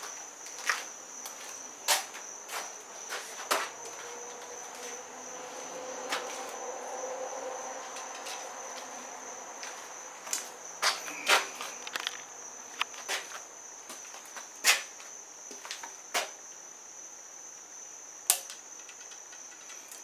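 Scattered light clicks and knocks of a compound bow, arrow and release aid being handled and set up, over a steady high-pitched whine.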